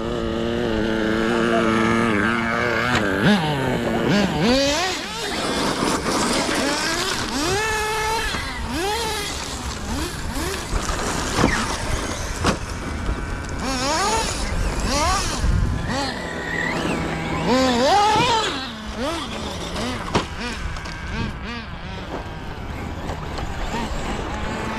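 Electric motors of large radio-controlled off-road cars whining up and down in pitch as the throttle is blipped and released. Several cars overlap, over a steady crunch of tyres on gravel and the odd knock of a landing.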